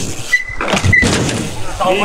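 BMX bike rolling over concrete with a steady rushing noise, and a brief high squeak twice in the first second. A man shouts "băi" near the end.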